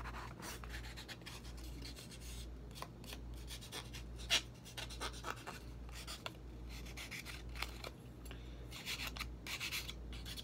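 Nail file rasping in short, irregular strokes along the edge of a piece of cereal-box cardboard, smoothing its rough sides; the strokes get a little louder near the end.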